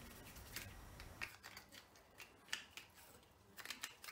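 Faint, scattered short scratches and clicks as a small plastic detergent-drawer part, the fabric softener level indicator, is handled and scrubbed with a toothbrush in soapy water. A few of these clicks come near the end.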